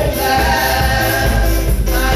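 Live gospel music: voices singing together over a Tama drum kit played with cymbals, plus a steady low bass line.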